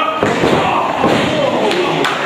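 Wrestler slammed down onto the ring canvas, a heavy thud, with voices in the background.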